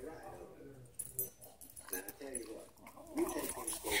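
Dog whining softly in a string of short whimpers that rise and fall in pitch while it waits for a treat held out in front of it.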